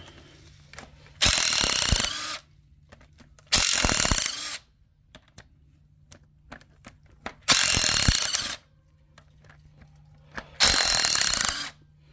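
Cordless impact wrench zipping cylinder head bolts out of a flathead V8: four bursts of about a second each, with light clicks between them.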